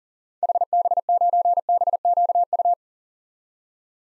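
Morse code sent at 40 words per minute as a single steady electronic beep keyed in dots and dashes, spelling the amateur radio call sign HB9BQU for the second time. It runs from about half a second in to just under three seconds in.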